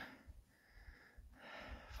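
Near silence, then a faint breath drawn in near the end, just before speech resumes.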